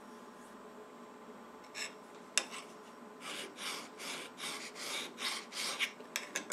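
Fingertips rubbing back and forth over the freshly milled surface of a steel block in a vise, feeling the finish: a quick run of short dry rubbing strokes, about three or four a second, in the second half, after two light clicks about two seconds in.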